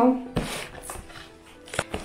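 Cardboard box and paper packaging handled while being unpacked, with two sharp knocks: one about a third of a second in, one near the end.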